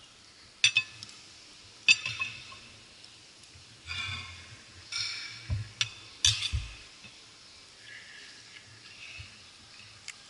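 Knife and fork clinking and scraping against a dinner plate: a few sharp clinks with short scrapes between them.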